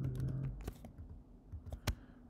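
A few scattered keystrokes on a computer keyboard as code is typed, with the sharpest key click near the end. A brief low hum sounds near the start.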